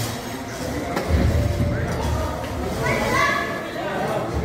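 Voices of children and adults calling out in a large, echoing indoor hall, with a low rumble underneath from about a second in until about three seconds.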